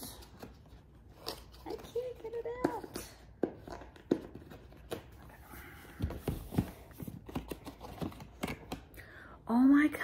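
Cardboard packaging of an advent calendar being handled and pried open by hand: scattered soft clicks, taps and rustles. A few brief murmurs come in between, and a short loud vocal exclamation near the end is the loudest sound.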